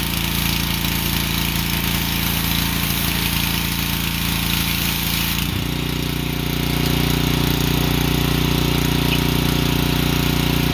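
Ryobi pressure washer's engine running steadily under the hiss of the water jet spraying. About five and a half seconds in the trigger is let go: the spray hiss stops and the engine note changes and gets slightly louder as it keeps running.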